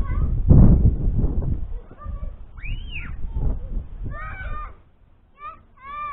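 Wind buffeting the microphone for the first couple of seconds, then a string of short, high calls that rise and fall in pitch, one at a time and in little clusters.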